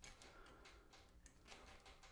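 Near silence with a few faint clicks: lineman's pliers twisting two wire ends together to start a splice.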